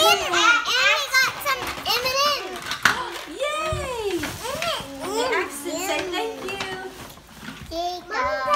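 Small children's voices: high-pitched chatter with rising and falling pitch throughout.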